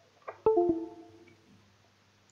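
Windows device-disconnect sound: a two-note falling chime that rings out and fades over about a second, signalling that the gear pump's USB interface unit (IFD) has just been unplugged from the PC.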